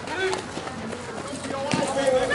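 Players and spectators shouting and calling out on a softball field during a live play, the voices getting louder and busier near the end.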